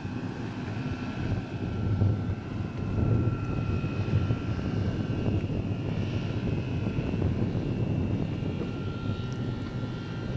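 Electric motors and propellers of an eLazair ultralight floatplane in flight: a steady whine with a second, higher tone above it, over a low rushing rumble.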